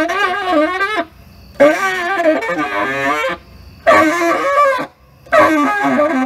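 Tenor saxophone played solo in free improvisation: four phrases of wavering, bending notes separated by short breath pauses, the first ending about a second in and the last still sounding at the end.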